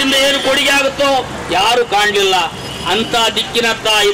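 A man making a speech in Kannada into a handheld microphone.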